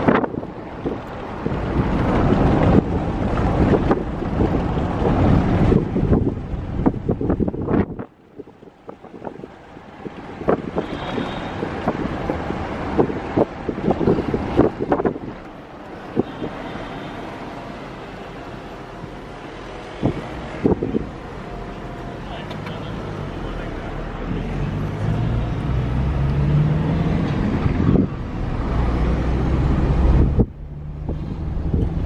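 Road and engine noise heard from inside a car's cabin as it drives through city streets, with a brief sharp drop in level about eight seconds in.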